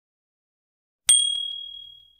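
About a second in, a single bright notification-bell ding from a subscribe-button animation: one high, clear ringing tone that fades away over about a second.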